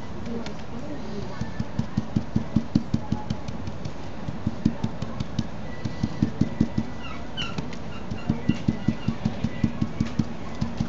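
Stencil brush pounced up and down on a stencil laid over felt, dabbing on acrylic paint: quick soft taps, about four a second, in runs broken by short pauses.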